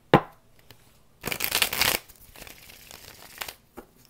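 A deck of tarot cards being shuffled by hand: a loud burst of shuffling lasting under a second, about a second in, then softer rustling of the cards.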